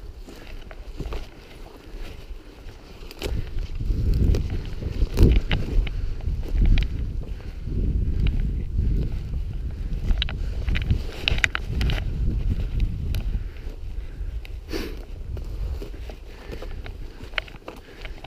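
Footsteps pushing through brush and undergrowth, with scattered snaps and rustles of twigs and a low, uneven rumble of wind and movement on the camera microphone.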